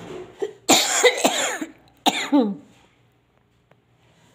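African grey parrot making a cough-like sound: a rough burst about a second long, then a shorter call that falls in pitch.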